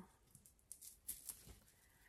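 Near silence with a few faint, short rustles of cloth sweatpants being handled and held up.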